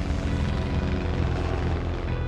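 Propeller biplane's engine running with a fast, pulsing drone.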